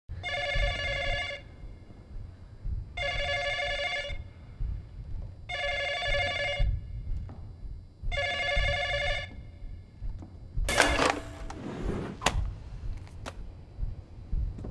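Telephone bell ringing four times, each ring a warbling trill of about a second, repeating every two and a half seconds. About a second and a half after the last ring, a loud clatter as the handset is picked up, then a couple of sharp clicks.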